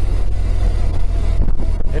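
BMW R1200GS boxer-twin engine running steadily while riding, mixed with a steady low rumble of wind on the microphone.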